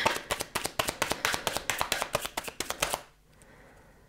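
A deck of oracle cards being shuffled by hand: a rapid run of sharp clicks from the card edges that stops about three seconds in.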